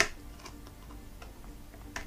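A single sharp click as the laptop's display (LCD) cable connector is pushed off its socket on the back of the screen panel with a metal tool, followed by a faint hum that comes and goes.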